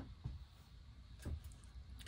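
Quiet handling sounds as blue T-shirt yarn is drawn off its ball, with a faint click at the start and a soft tap a little over a second in.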